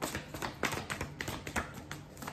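A hand-held stack of paper cards being flicked through, card edges snapping past the thumb in a quick, irregular run of light clicks.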